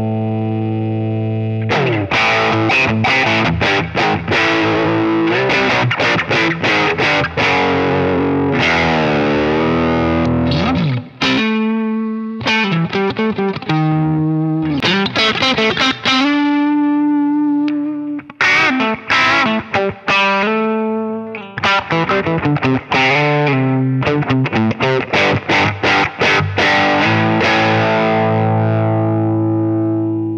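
Electric guitar played through a Line 6 POD Express Guitar on its 'Special' amp channel, the Line 6 Litigator amp model, with distortion. It opens on a held chord, goes into quick picked chords and riffs with some held, wavering notes, and finishes on a ringing chord.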